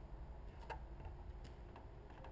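A Hudson single sculling shell being handled, heard from a camera mounted on the boat: a sharp click about two-thirds of a second in and a couple of fainter ticks, over a low rumble of handling noise.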